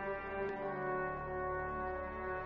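A choir holding long, sustained chords, many voices blended into a steady, full sound.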